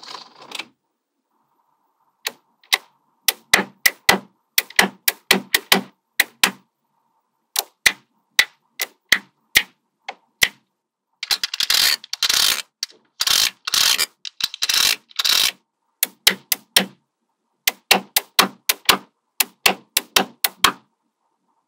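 Small magnetic metal balls clicking sharply as they snap onto one another, in quick clusters of clicks with short silences between. Near the middle, denser clattering runs as whole strips of balls are pressed into place.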